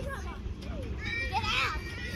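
Young children's voices at play, calling out, with a loud high-pitched cry about one and a half seconds in, over a steady low rumble.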